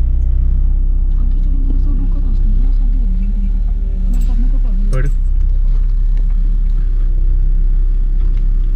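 Car driving, heard from inside the cabin: a steady low engine and road rumble, with a short sharp knock or click about five seconds in.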